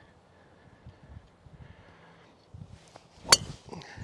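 Srixon ZX5 Mk II driver striking a golf ball off the tee: one sharp crack about three seconds in, a well-struck drive.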